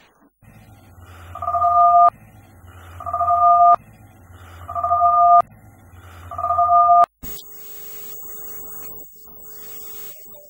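Electronic two-tone warning alarm sounding four times, about every one and a half seconds. Each repeat swells over a low rumble into a steady two-note beep and cuts off sharply. A click follows, and then a steady electronic hum with a faint high whine.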